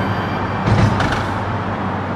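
Steady roar of freeway traffic, with one vehicle passing louder about a second in, over a low steady hum.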